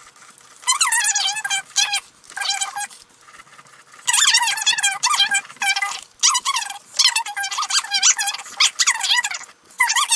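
Uni-ball Signo white gel pen squeaking against acrylic-painted paper as it draws small circles: high, wavering squeaks in short runs for the first three seconds, then almost continuous.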